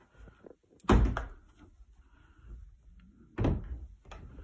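Interior panel door being handled and pushed shut: a sharp thud about a second in, the loudest sound, and a second thud near the end.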